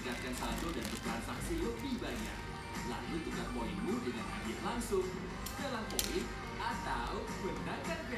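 Television audio playing in the background: voices talking over music. A single sharp click sounds about six seconds in.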